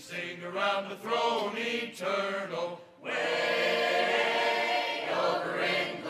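Mixed church choir singing a hymn: a few short phrases, a brief break about halfway through, then a long held chord.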